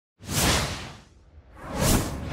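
Two whoosh sound effects for an animated logo intro: the first swells quickly and fades within the first second, the second builds up steadily towards the end.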